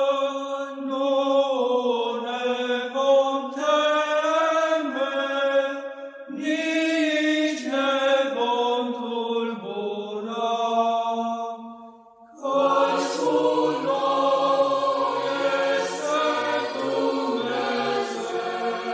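Choral church chant in the Orthodox style, sung slowly in long held notes. About twelve seconds in it breaks off briefly, then resumes fuller, with deeper voices added underneath.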